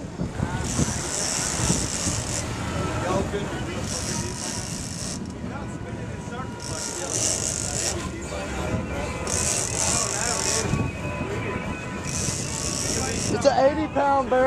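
Heavy 80-wide big-game trolling reel whirring in repeated spells of about a second and a half, a few seconds apart, as line is worked against a tuna on the fighting chair. A boat's engine and wind rumble underneath.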